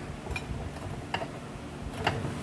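A couple of light metallic clicks as steel tubing is handled and set against steel on a welding table, over a steady background hiss.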